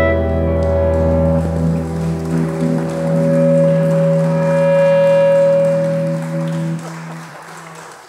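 A folk band's closing chord, held on electric guitar and the other instruments and dying away. The deepest notes fade first, and the rest stop a second or so before the end.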